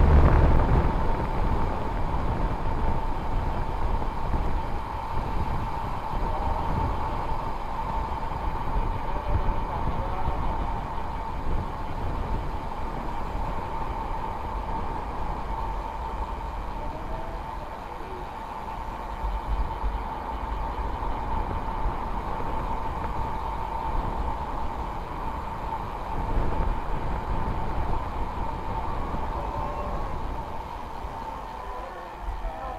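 Wind rushing over the microphone and tyre rumble from a road bike descending at speed, fairly even throughout, with a thin steady whine underneath.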